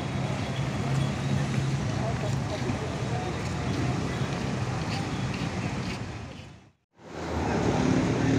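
A tour coach's diesel engine running steadily as it drives slowly past in street traffic, a low hum under general traffic noise. The sound drops away to silence for a moment near the end, then returns.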